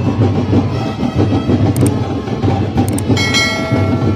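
Sinulog street-dance drumming: a loud, fast, dense drum beat. About three seconds in, a held pitched note sounds briefly over the drums.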